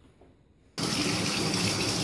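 Bath tap running, water pouring steadily into a filling bathtub; the rush starts suddenly about three-quarters of a second in, after a quiet start.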